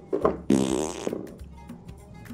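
A man's short sputtering breath blown through the lips, like a raspberry, about half a second in, over quiet background music.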